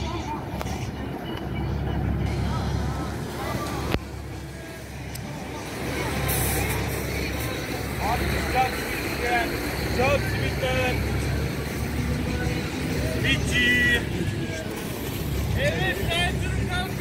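Outdoor harbour-side ambience: a steady low rumble of distant vehicle traffic, with voices of passers-by now and then, more of them in the second half.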